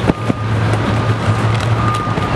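A steady low motor hum with a thin high tone over it that comes and goes, and a few sharp clicks in the first half second.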